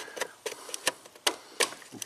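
Irregular light clicks and taps, five or six in two seconds, from hands working on a vehicle wiring harness and its plastic clip.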